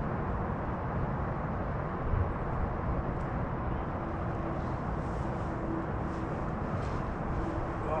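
Steady, rushing wind noise on the microphone, gusting slightly up and down.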